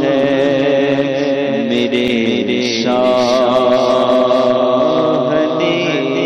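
A man singing a naat, an Urdu devotional song, into a microphone, drawing out long held notes that bend slowly in pitch in a chant-like style.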